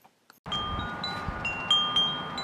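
Wind chimes ringing in the breeze: several clear, sustained metallic tones struck one after another, with wind noise on the microphone. The first half second is near silence.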